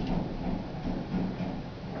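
A light click of a hex wrench on the set screw of a transducer's metal clamp, followed by faint handling noise as the tool and hands come away.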